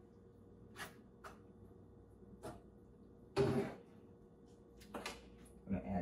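Spoon and skillet handled at a gas stove: a few light clicks and knocks of metal on the pan, with one louder knock-and-scrape about three and a half seconds in.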